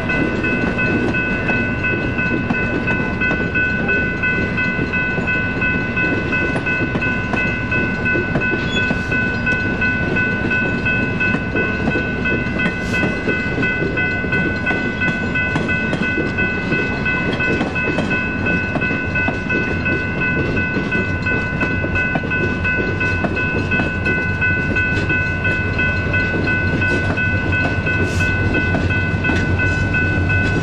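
Railroad crossing warning bells ring steadily over the rumble and clatter of passenger cars rolling past on jointed track. In the last several seconds a deeper rumble builds as the trailing locomotive nears.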